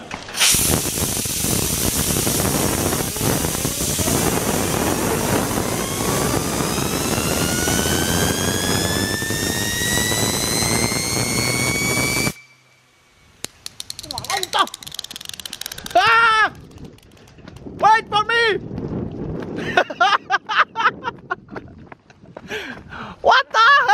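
Compressed air hissing steadily from an air blow gun onto a homemade chain-and-sprocket fidget spinner, spinning it up so its bearing gives a whine that rises steadily in pitch for about twelve seconds; the air cuts off suddenly. Short vocal exclamations follow in the second half.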